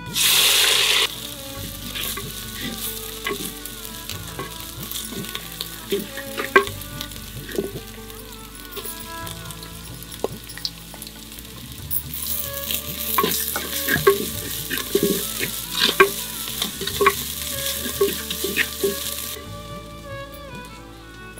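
Masala frying in a clay pot over a wood fire: a steady sizzle, with a wooden spatula scraping and knocking against the pot as it is stirred. A loud burst of hissing fills the first second, and the sizzle grows louder again in the second half.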